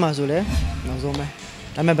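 A man speaking Burmese into a handheld microphone, with a low thump about half a second in.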